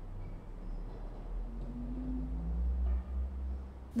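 Pipe organ's 16-foot Subbass pedal stop sounding deep, soft sustained notes, a low hum that swells about a second and a half in and eases off just after three seconds.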